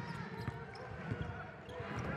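Basketball bouncing on a hardwood court during live play, a series of irregular sharp thuds over the background of an arena.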